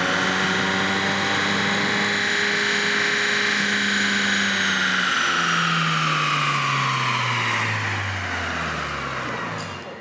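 A 2.3-litre turbocharged four-cylinder Ford Mustang EcoBoost engine with its stock intake, run on a chassis dyno. It holds high, steady revs for about five seconds, then the revs and a high whine fall away together over the last few seconds.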